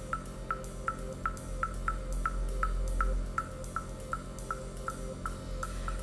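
Live electronic music in a quiet passage between vocal lines: a steady pulse of short, high ticks, about three a second, over a deep sustained bass drone and a held tone.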